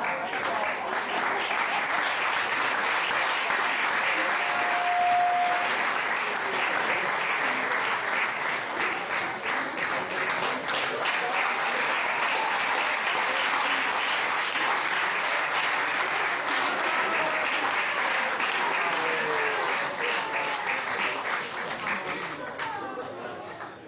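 An audience applauding steadily, a dense continuous clapping throughout, with a brief steady tone about five seconds in.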